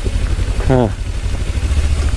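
Kawasaki Ninja 300's parallel-twin engine running at low speed on a rough stony track, a steady low drone.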